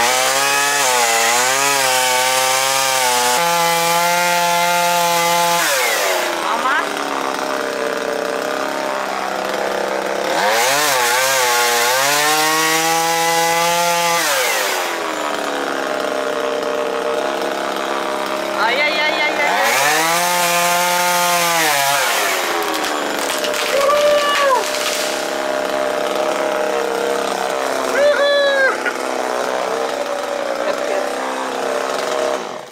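Two-stroke chainsaw cutting through tree branches. It revs up hard three times, holding high for several seconds each time, and drops back to idle between cuts. Two short throttle blips come near the end.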